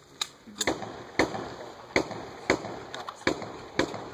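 A string of about six handgun shots fired in steady succession, one roughly every half to three-quarters of a second, each with a short echo off the range berm.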